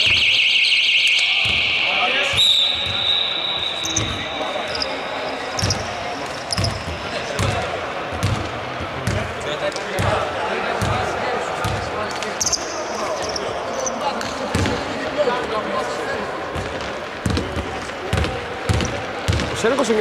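A scoreboard buzzer sounds for about two and a half seconds at the start, followed by a shorter high steady tone. Then a basketball bounces again and again on the wooden court, under players' voices in the large hall.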